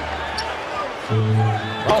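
Basketball arena background din, then a steady held musical note of under a second, starting about a second in.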